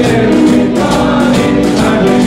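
Live covers band playing loud pop dance music with a steady beat and voices singing.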